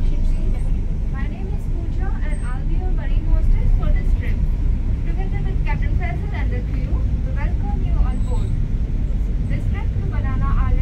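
Ferry's engines running with a steady low rumble heard inside the passenger cabin, under indistinct voices.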